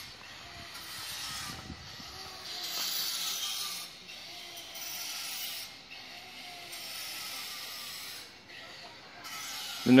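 Restoration work making repeated rasping strokes, each lasting a second or so with short pauses between, about five in all: the noise of the restoration being done on the temple's library.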